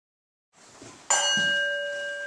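A small metal bell struck once about a second in, ringing on with a clear, steady tone that does not fade.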